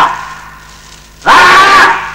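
A man's loud shout, about half a second long, a little over a second in, after an earlier shout dies away at the start.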